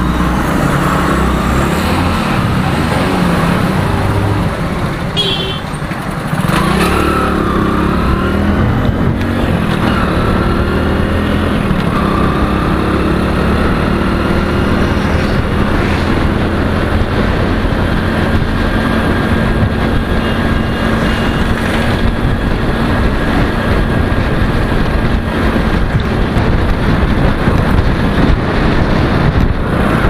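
Motorcycle engine running as the bike rides along a road, with wind and road noise and other traffic passing.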